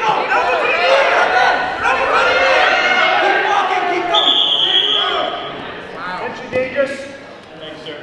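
Spectators and coaches shouting over one another during a wrestling bout. About four seconds in, a referee's whistle blows once for about a second, stopping the match for a potentially dangerous hold. The shouting then dies down.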